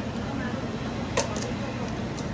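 Steady restaurant room noise with faint voices in the background, and two sharp metal clinks close together a little past a second in.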